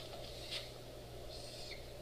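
Faint dry-erase marker strokes on a whiteboard: a short squeak about half a second in, then a longer scratchy stroke ending in a small squeak near the middle, over a steady low room hum.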